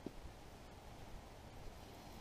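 Quiet background hiss, with one faint click right at the start.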